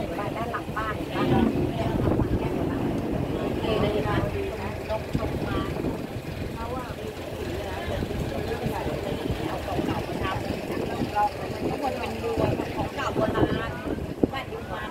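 Long-tail boat's engine running steadily under way, with people talking over it.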